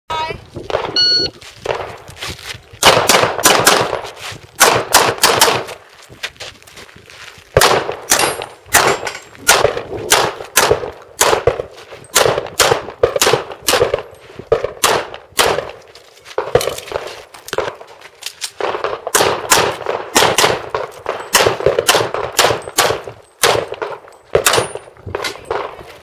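An electronic shot timer beeps about a second in, then a handgun fires string after string of rapid shots. Two longer pauses break up the shooting, around a quarter and again around two thirds of the way through.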